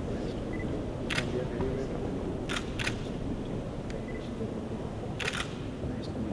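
Camera shutters clicking: one click, then a quick pair, then another quick pair near the end, over low background chatter of a crowd.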